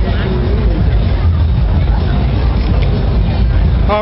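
Indistinct background chatter of people in a large hall over a loud, steady low rumble.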